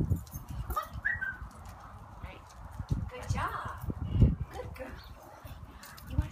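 Footsteps on concrete pavement from a person in boots walking a leashed dog, with irregular knocks and scuffs.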